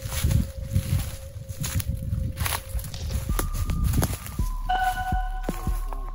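Footsteps crunching through dry fallen leaves on a woodland path. Sustained music tones sound underneath, one held note at first, then several notes changing every second or so in the second half.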